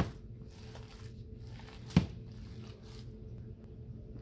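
Bare hands squishing and kneading raw ground beef mixture in a plastic bowl, faint and irregular, with one sharp knock about two seconds in, over a steady low hum.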